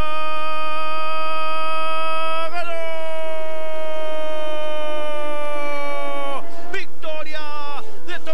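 A male race commentator's long sustained shout, holding a single vowel on one pitch for several seconds. The pitch steps up slightly about two and a half seconds in, and the note drops away in a falling glide shortly before the end, where choppier voice follows.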